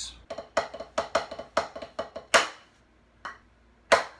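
Drumsticks playing a rudiment on a practice pad: a quick run of sharp, dry taps ending on one loud accented stroke about two and a half seconds in.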